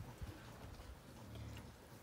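Faint sounds of a pen of weaned piglets shuffling and rooting in the dirt, with a light tap about a quarter second in.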